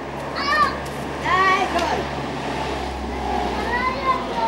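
Young children's high-pitched shouts and calls, two loud ones in the first two seconds and softer ones near the end, over a low steady hum.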